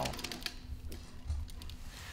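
Industrial sewing machine running faintly, stitching a seam through upholstery fabric.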